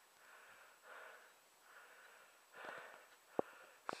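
A runner's faint breathing, four soft breaths about a second apart, with a single small click near the end.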